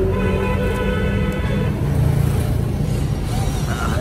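A steady low mechanical hum, like a running engine, with a held pitched tone over it for the first second and a half or so.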